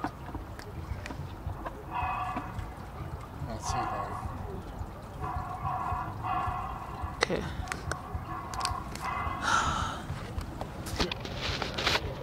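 A recording played through a small outdoor push-button speaker box: a string of about six short sounds, each under a second, with a steady pitch.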